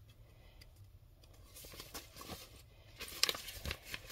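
Faint rustling and crinkling of a paper packing list being handled, with a few sharper rustles near the end.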